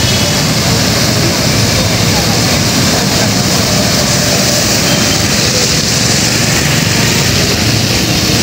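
Traffic running through a flooded road: a steady hiss of tyres and spray on standing water over the low rumble of car and motorcycle engines.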